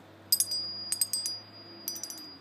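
Wind chime of hanging leaf- and flower-shaped pieces clinking together in three quick clusters, with a high ringing tone held between the strikes.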